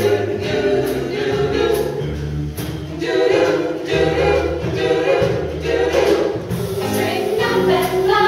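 Mixed a cappella choir singing in close harmony, with a low sung bass line underneath and a crisp tick roughly once a second keeping the beat.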